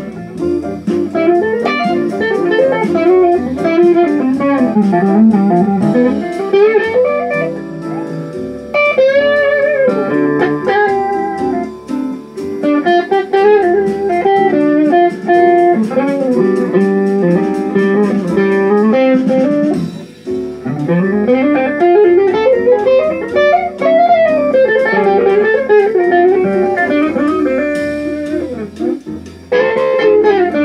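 Electric guitar playing an improvised-sounding lead line, many notes bent so the pitch glides up and down, with a steadier lower part beneath it.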